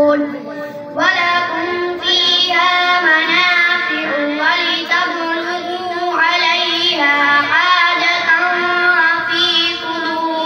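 A boy reciting the Quran in a melodic, drawn-out style into a microphone, holding long notes with wavering ornaments; he pauses briefly for breath about a second in, then carries on.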